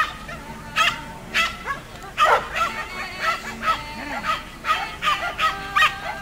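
A three-and-a-half-month-old mudi puppy barking as it herds sheep: about a dozen short barks at irregular intervals.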